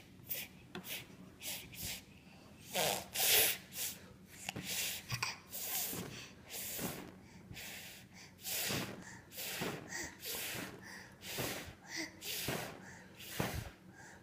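A toddler puffing and blowing over and over at birthday candles: a string of short, breathy blows, roughly one or two a second, some with a little voiced grunt in them, until the candles go out.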